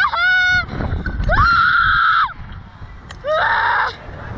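A woman screaming on a reverse-bungee slingshot ride: a short scream at the start, a long, high, held scream of about a second in the middle, and a shorter scream near the end.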